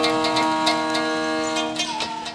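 Violin holding a long final note over the steady plucking of a gambo, a long-necked Bimanese lute. The music slowly fades as the piece comes to its end.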